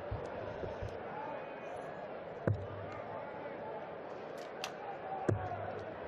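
Two steel-tip darts striking a bristle dartboard, two sharp thuds nearly three seconds apart, over the low murmur of an arena crowd.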